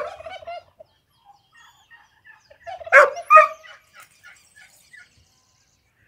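Domestic tom turkey gobbling in response to a person's "glu-glu" call: a short gobble at the very start and a louder one about three seconds in.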